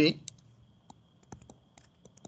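A stylus tapping and scratching on a tablet screen during handwriting, giving a series of light, irregular clicks.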